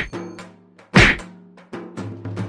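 Two loud whacks of a stuffed bag striking a person, one at the start and one about a second in, each dying away quickly over steady background music.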